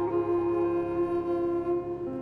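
Xiao, the vertical bamboo end-blown flute, holding one long low note for most of the two seconds before it moves on near the end, over soft grand piano accompaniment.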